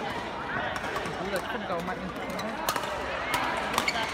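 Badminton rally: a few sharp strikes of a racket on the shuttlecock in the second half, over voices echoing in the sports hall.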